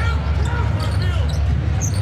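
A basketball being dribbled on a hardwood court over the steady low rumble of an arena crowd.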